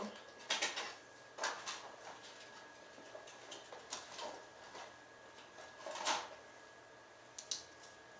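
Craft tools and card being handled on a work mat: a handful of separate soft knocks and rustles spread across a few seconds, with a faint steady high tone underneath.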